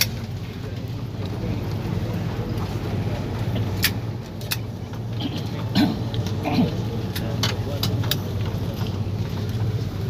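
Steady low rumble of an airliner cabin as the plane rolls on the ground, with several sharp clicks and rattles, most of them in the second half.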